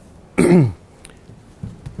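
A man clearing his throat once, about half a second in, a short sound falling in pitch.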